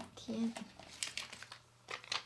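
One spoken word, then a clear plastic bag of self-adhesive rhinestone sticker strips crinkling in quick crackles as it is handled, about a second in.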